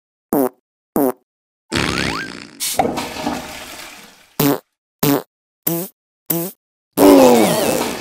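Cartoon fart sound effects in a string: two short ones, a longer noisy rush about two seconds in, four short ones about half a second apart, and a longer, louder one near the end with a falling pitch.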